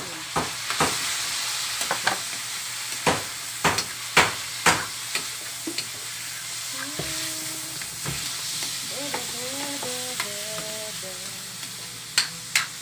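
Raw pork belly and ribs sizzling in hot oil in a wok, while a metal spatula knocks and scrapes against the pan as the meat is stirred. The sharp knocks come thick in the first five seconds, then the frying settles to a steady sizzle.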